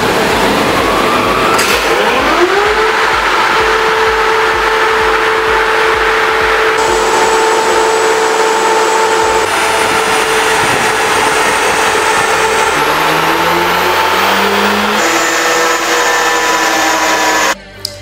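Volkswagen Golf 1.4 TSI Twincharger's supercharged and turbocharged four-cylinder engine under full load on a chassis dynamometer. It revs up with a rising whine over the first couple of seconds, holds at high revs, climbs again later on and cuts off suddenly near the end.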